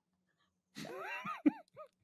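Laughter: a run of high-pitched laugh notes, each rising and falling in pitch, beginning about a second in and breaking into short separate bursts.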